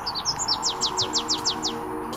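A bird calling outdoors: a fast run of about eight high, downward-sliding chirps, some seven a second, preceded by a few scattered single notes.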